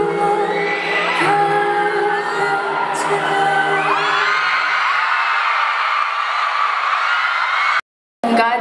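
Live band with a male and a female singer holding notes over guitar and drums. The music dies away about five seconds in while the audience cheers and whoops, and the sound cuts out briefly near the end.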